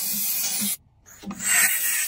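Steam cleaner jetting steam into a washing machine's detergent drawer: a steady hiss with a faint low pulse about twice a second. It cuts out for about half a second a little under a second in, then comes back louder.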